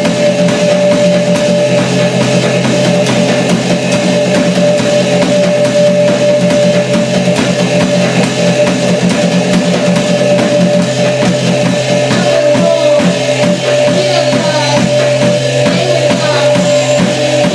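Loud live band music: a drum kit played under a steady, held electronic drone. About three-quarters of the way through, a low pulse starts repeating about twice a second.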